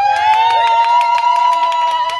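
A celebrating crowd: fast rhythmic hand clapping, with one long, slightly rising high-pitched cry held over it.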